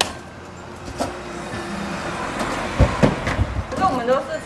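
A road vehicle passing by, its noise swelling steadily over a couple of seconds, with a click about a second in and a few dull thumps near the end.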